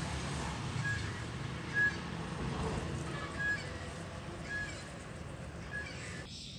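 A bird calling with a short, high note repeated roughly once a second, over a low background rumble.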